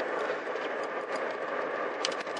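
Steady road and engine noise inside a moving car's cabin, an even hiss without a clear pitch.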